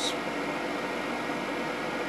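Large in-line blower and DC fans of a solar air-heating system running steadily: an even rush of air noise with a few faint steady hums.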